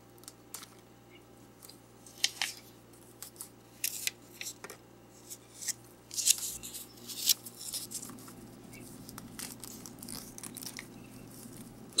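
Plastic shrink-wrap on a plastic blind-box container being cut and scraped with a small folding knife, then picked at and peeled: scattered sharp clicks, scratches and crinkles, busiest about six to seven seconds in.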